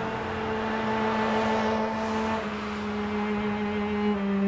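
A car driving steadily along a road, its engine and tyre noise under sustained low string notes of a film score that shift pitch slightly about halfway through.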